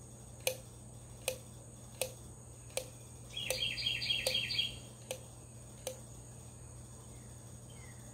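Thumb-lever pump oil can being worked, a sharp metallic click with each stroke about every three-quarters of a second, stopping about six seconds in. It is pumping engine oil into a tractor's fan housing until the oil runs out of the level hole. Partway through, a bird chirps a quick run of notes in the background.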